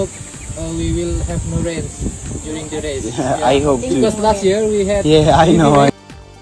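Indistinct voices talking, unclear in words, over a steady high hiss.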